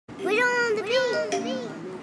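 A high-pitched, child-like voice calling out in three short phrases, each rising and falling in pitch.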